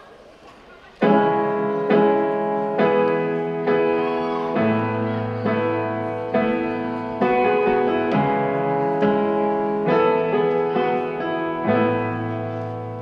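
Solo piano music begins about a second in after a brief hush. Slow chords are struck roughly once a second, each ringing and fading before the next, over a held low bass note.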